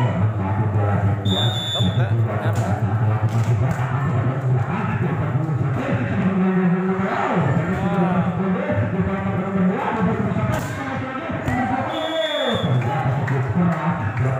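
A volleyball being struck with sharp thuds during a rally, over steady crowd voices and shouts and music. Two short shrill steady tones come about a second and a half in and again near the end.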